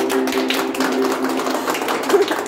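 A small audience clapping in a reverberant rock cave as a song ends, over the tail of a long held sung note that stops just before the end.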